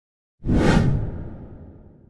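A whoosh sound effect for a transition that hits suddenly about half a second in, then fades away over the next two seconds.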